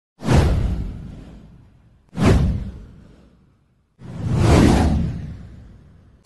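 Three whoosh sound effects of an intro title animation: the first two hit suddenly and fade away over about a second and a half each, and the third swells up about four seconds in before fading.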